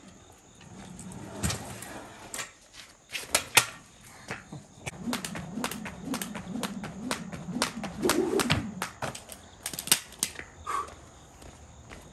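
A three-quarter pound weighted jump rope being skipped on a concrete floor: sharp, regular slaps of the rope and landings, about two to three a second, starting a second or two in and stopping about two seconds before the end.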